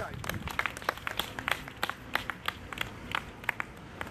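A small group clapping their hands, the claps scattered and uneven, about five a second.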